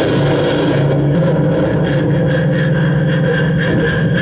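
Live noise music from electronics and effects pedals: a loud, steady layered drone of held tones. A hiss of high noise fades out over the first second, and a low tone steps up in pitch about a second in.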